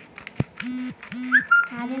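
A looping background track of short, level hooting vocal notes, heard as "no, no", in pairs, each pair followed by a high whistle-like chirp that rises and then holds. The pattern repeats about every second and a bit. A single sharp click comes about half a second in.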